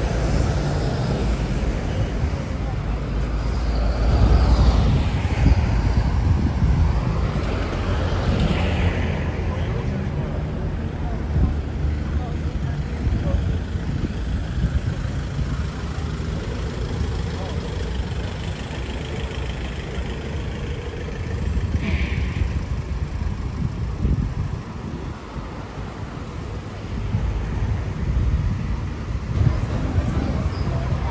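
Outdoor ambience of a busy dining strip: diners and passers-by talking over a steady low rumble, with a few brief louder swishes.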